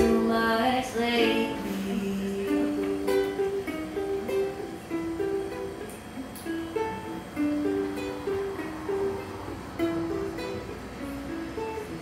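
Ukulele playing an instrumental break: a melody picked as single notes, one after another. A sung note fades out in the first second.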